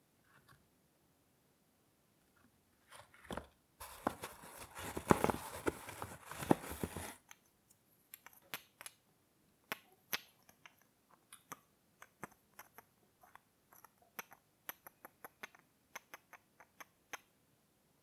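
Wooden chess pieces handled close to the microphone: a loud stretch of dense rubbing and clicking from about four to seven seconds in, then many small, sharp wooden clicks, several a second, as two wooden knights are turned and tapped against each other.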